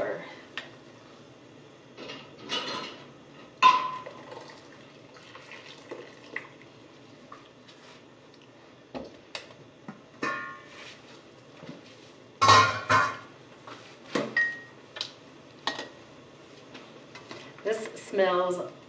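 Kitchen clatter of canning preparation: glass mason jars clinking as they are set down on the counter, the lid of a stainless steel pot clanking, and a spoon knocking in the pot. Separate knocks and clinks come every second or two, some ringing briefly, with the loudest cluster about twelve seconds in.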